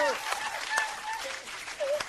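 Studio audience applauding, with a few brief fragments of voices over the clapping.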